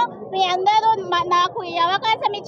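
A woman speaking in a loud, high-pitched, impassioned voice, only speech.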